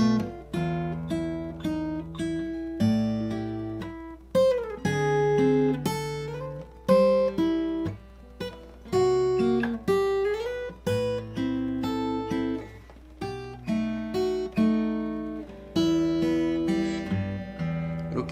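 Steel-string acoustic guitar played solo fingerstyle: a continuous run of plucked arpeggiated chords and melody notes, with a few notes sliding in pitch along the way.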